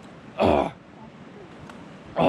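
A man coughs once, hard and short, about half a second in, trying to clear his throat after swallowing a mosquito.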